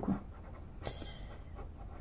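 Pen scratching on paper in short sketching strokes, with a brief breath about a second in.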